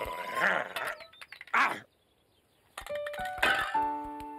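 Cartoon soundtrack: a short vocal laugh, then a brief hiss about a second and a half in, and after a pause a few clicks and a bright musical sting of several held, bell-like notes near the end.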